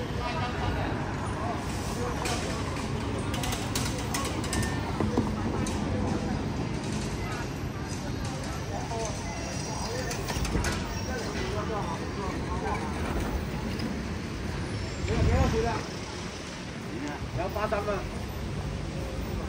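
Busy city street ambience: steady traffic noise with passers-by talking around the microphone, and a brief louder swell about three-quarters of the way through.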